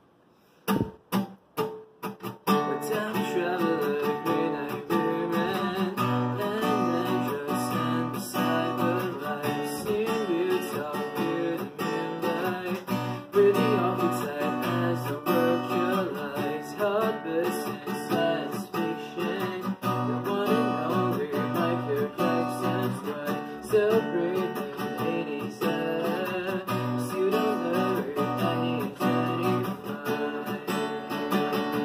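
Acoustic guitar being strummed. A few separate strums come first, then a steady chord-strumming song from about two and a half seconds in.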